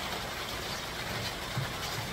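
Steady outdoor background noise, a low even rumble with no distinct events, and one faint low knock about one and a half seconds in.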